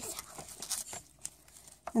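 Soft crinkling and rustling of small plastic bags of loose glitter being handled and lifted out of a package, with a couple of light ticks in the second half.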